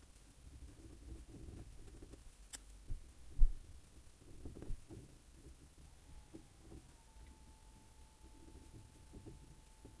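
Quiet, irregular scraping and dabbing of a palette knife working acrylic paint on a canvas, with a single loud low thump about three and a half seconds in. A faint steady whine comes in about six seconds in.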